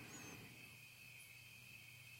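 Near silence: faint room tone in a pause of speech, with a steady high-pitched whine and a low hum underneath.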